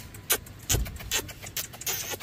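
An irregular run of short, sharp clicks and scratchy rustles, several a second.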